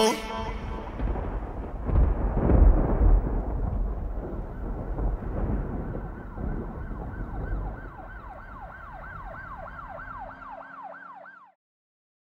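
A low rumbling noise that slowly fades, then a siren in a fast yelp, its pitch sweeping up and down about four times a second, coming in over the last few seconds before the sound cuts off suddenly.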